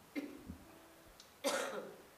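A person coughing twice, the second cough about a second and a quarter after the first, louder and longer.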